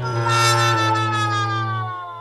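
A sustained synthesized musical tone over a steady low drone, its upper pitch gliding slowly downward as it fades out near the end.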